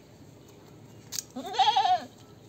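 A goat bleating once near the end, a short call with a quavering, wavering pitch, just after a brief click.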